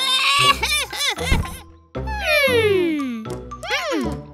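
Cartoon music and twinkling magic-spell sound effects: quick up-and-down swoops, then a long falling glide in the middle, and more rising swoops near the end.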